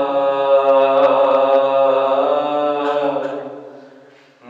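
A man's solo, unaccompanied devotional chant, sung in long held, wavering notes into a microphone. The phrase fades away in the last second.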